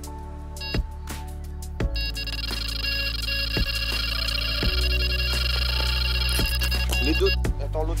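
Electronic carp bite alarm sounding continuously for about five seconds, the high run of tones of a fish taking line, over background music with a steady beat. A voice calls out near the end.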